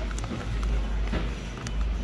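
Plastic coffee bag rustling as it is handled, with a few short crinkles, over a steady low background hum.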